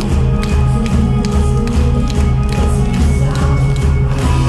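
Live rock band playing loudly through a concert PA, with heavy pulsing bass, drum hits about twice a second and electric guitar. No singing in this passage.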